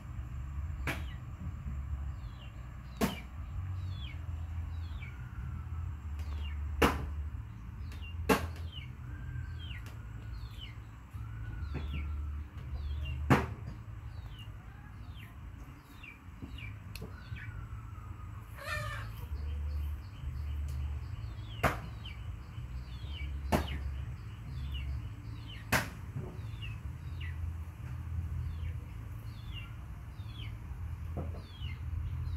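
Steady low hum of a pedestal electric fan running. A sharp click comes every few seconds, and many short high chirps fall quickly in pitch.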